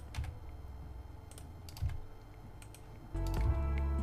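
A few scattered clicks of a computer mouse and keyboard during 3D editing. About three seconds in, background music with sustained notes comes in and is louder than the clicks.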